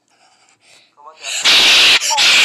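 Faint sound at first, then about a second in a rising cry that breaks into a sudden, very loud, distorted scream near the end.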